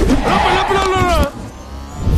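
A man's drawn-out cry of pain, about a second long, wavering in pitch and then breaking off abruptly.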